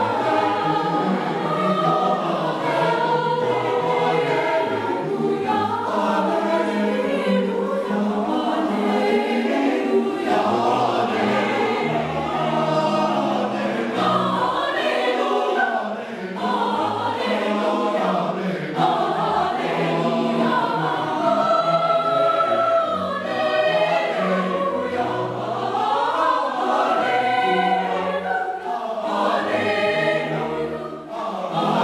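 Large youth choir singing in parts, accompanied by cello and digital piano, with sustained low notes underneath the voices.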